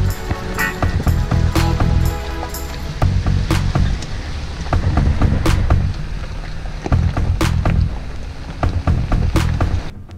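Background music with a beat.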